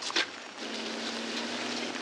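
A four-wheel-drive ute driving on gravel: a steady rushing noise, with an engine hum that comes in about half a second in.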